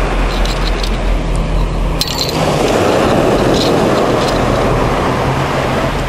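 Steady rushing beach noise of wind on the microphone and surf, with a faint steady hum underneath and a brief sharp click about two seconds in.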